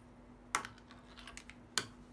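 Two sharp clicks, a little over a second apart, with fainter ticks between, as slim UV lamp tubes are handled and knocked against a plastic box, over a steady low hum.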